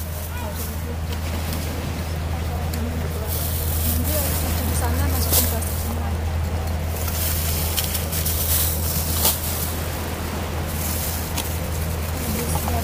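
Plastic bags rustling in stretches as they are handled, with a few sharp clicks, over a steady low rumble and quiet, low talk.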